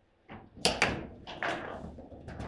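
Table football play: sharp knocks of the hard ball struck by the plastic player figures and the rods clacking, several hits in quick succession starting about a third of a second in, the loudest just before the one-second mark.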